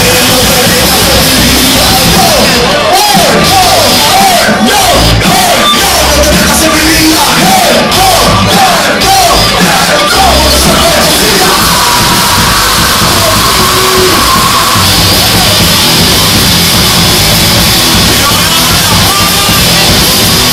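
Live rock band playing loud, with drums and guitar, and the crowd yelling over it. A wavering, wobbling high line comes in about three seconds in and again around eight seconds.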